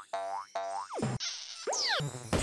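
Cartoon sound effects in a playful intro jingle: two short rising boings, then a falling, whistle-like glide near the end.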